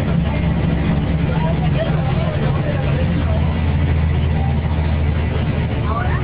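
Rear-mounted Mercedes-Benz OM 366 inline-six diesel of an OHL1316 city bus running under way, heard from inside the passenger cabin, with indistinct voices in the background. The sound is thin and band-limited, as recorded on an old mobile phone.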